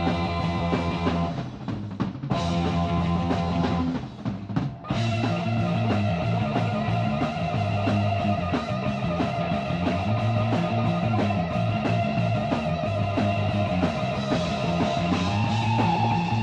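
Punk rock band playing an instrumental passage on electric guitar, bass and drums, in a raw recording made on basic equipment. The band drops out briefly twice, about one and a half and four seconds in, then plays on steadily.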